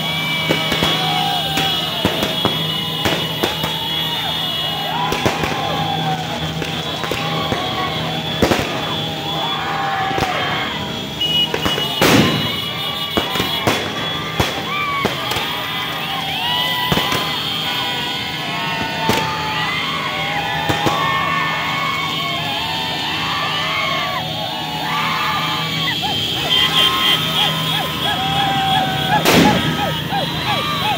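Firecrackers going off amid a shouting, cheering crowd, with several sharp bangs, the loudest about 12 seconds in and near the end. Music plays underneath.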